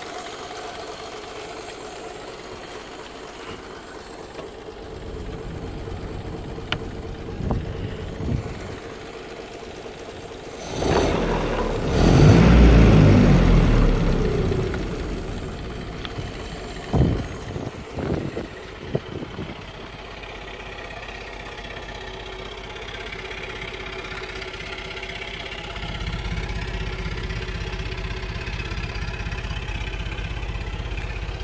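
1930 Ford Model A's four-cylinder flathead engine idling steadily, running on a freshly fitted reconditioned cylinder head. Near the middle a loud rushing noise swells for about three seconds, and a few sharp knocks follow soon after.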